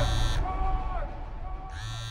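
Trailer sound design: a harsh, buzzing electronic tone that cuts out about half a second in and comes back near the end. Between the two bursts, thin wavering tones slide downward over a low hum.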